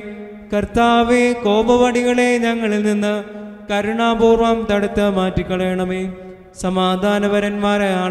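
Sung Malayalam liturgical chant of the Holy Qurbana, a single voice in long held phrases, with short pauses for breath about half a second, three and a half, and six and a half seconds in.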